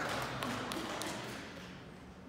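Audience laughter in a large hall, dying away over the first second and a half, with a few light taps in it.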